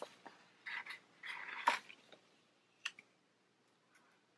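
Paper planner pages and sticker sheets being handled: two short papery rustles in the first two seconds, then a single light click near the three-second mark.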